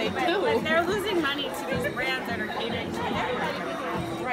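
A woman talking, with music and crowd chatter in the background.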